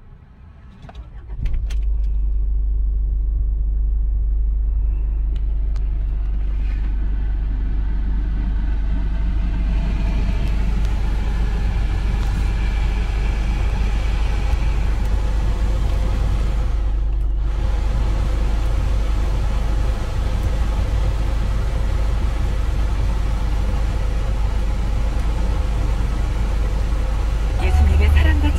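2006 Kia Sportage engine starting with a brief crank about a second in, then idling steadily with a constant low hum.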